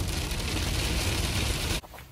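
Heavy rain beating on a moving car, mixed with tyre spray and road rumble, heard from inside the cabin. It cuts off suddenly near the end.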